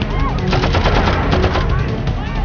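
Rapid automatic gunfire, a dense run of shots fired in quick succession, thickest from about half a second in, with men shouting over it.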